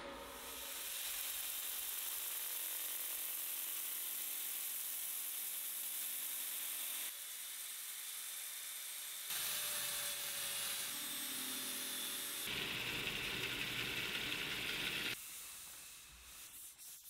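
Power sanding: a rotating sanding disc on a handheld power tool is held against a cherry-burl and epoxy vase spinning on a lathe, making a steady hissing whir. The sound jumps abruptly in level and tone several times, about seven, nine, twelve and fifteen seconds in.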